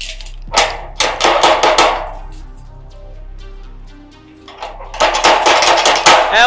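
A hand banging and rattling a padlocked steel bar gate: two bursts of rapid metallic knocks, the first about half a second in, the second about five seconds in.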